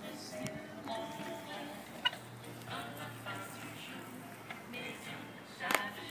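Faint background music with short melodic notes, marked by a sharp click about two seconds in and another near the end.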